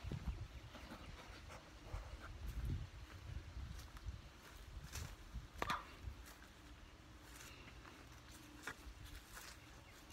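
Faint footsteps on grass and handling noise from a hand-held phone being carried while walking, over a low rumble, with a few short sharp clicks.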